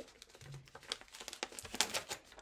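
Tape being peeled off and crumpled up by hand: a run of short, irregular crackles, loudest just before the end.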